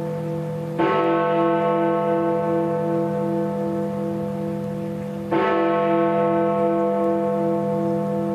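Big Ben, the great hour bell of the Palace of Westminster, striking the hour of eleven that opens the two-minute silence. Two slow strokes about four and a half seconds apart, each ringing on with a long, slowly pulsing hum.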